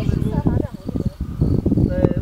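Low, gusty rumbling of wind buffeting the microphone, with bits of nearby voices at the start and end. Underneath, an insect, a cricket, chirps faintly in short repeated high trills.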